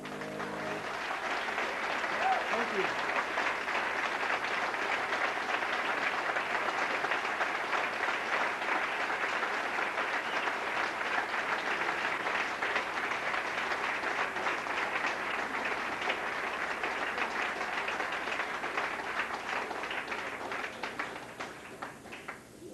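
Live audience applauding as the last piano notes die away in the first second. There is a brief shout about two seconds in. The clapping builds quickly, holds steady, and thins out near the end.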